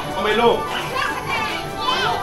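Young children's voices chattering and calling out over one another, with faint background music.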